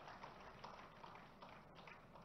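Near silence: a pause in a speech, with only faint, even background noise.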